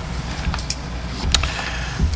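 Room tone in a meeting chamber: a steady low hum with a few faint clicks, such as papers or small movements, about a second in.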